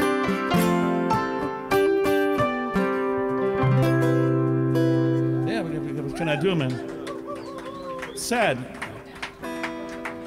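Live folk-country band playing strummed acoustic guitar over keyboard chords; about five and a half seconds in the low notes stop and the chord rings on under voices talking. No bass is heard, and the band says the bass isn't working.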